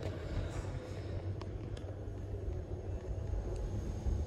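Steady low hum inside a lift car, with two faint clicks close together just under halfway through.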